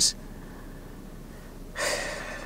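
Low room tone, then near the end a man takes a short, audible breath in just before speaking again.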